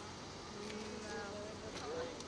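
Faint voices of people talking in the background over a low, steady buzzing hum.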